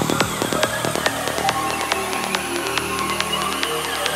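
Progressive psytrance track: the kick drum drops out within the first second, leaving evenly repeating percussion ticks over sustained synth tones.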